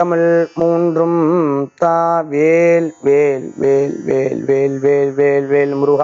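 A man chanting a prayer invocation in a steady, near-even pitch, with held syllables broken by short pauses.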